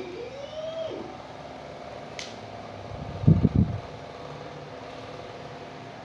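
Steady hum of a kitchen fan with a few faint steady tones, while a pan of sauce heats toward the boil. A short rising-and-falling tone sounds in the first second, and about three seconds in a brief cluster of low thumps is the loudest sound, just after a short click.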